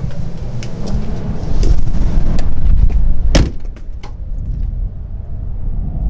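A low, noisy rumble, loudest in the first half, with one sharp knock about three and a half seconds in and a few faint clicks.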